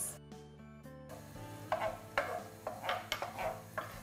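Chopped onions sizzling in melted butter in a non-stick frying pan, stirred with a wooden spoon that scrapes and knocks against the pan in a run of short irregular clicks starting about a second and a half in.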